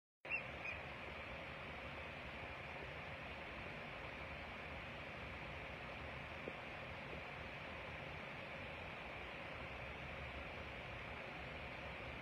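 Faint, steady night-time outdoor ambience: an even background hiss with a constant high-pitched band and a faint low hum, after a short sound right at the start.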